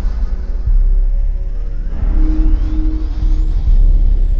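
Dramatic sci-fi soundtrack sound design: a loud, deep rumble under eerie music, with a thin electronic tone that sweeps steadily upward from about halfway through and turns to fall away near the end.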